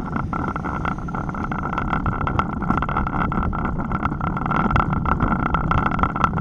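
Wind and road noise on a bicycle-mounted camera's microphone while riding: a steady rush with many small clicks and rattles as the bike rolls over the concrete road.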